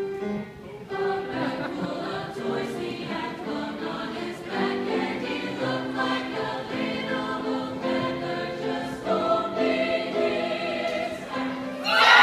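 Mixed choir of men and women singing in held notes.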